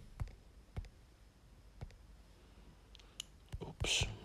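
Typing on a smartphone's touchscreen keyboard: three separate soft clicks in the first two seconds, one per key tap. A brief, louder sound comes near the end.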